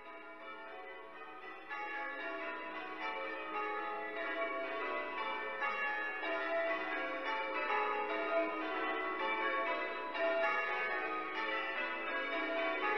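Church bells ringing in a continuous peal, many bells sounding over one another, growing louder over the first couple of seconds and then holding steady.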